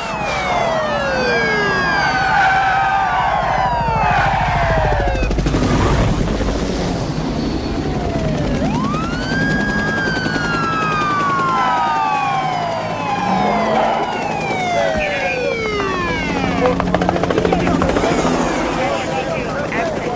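Several police car sirens wailing at once, their pitch sweeping up and down and overlapping, over the running of car engines and a helicopter.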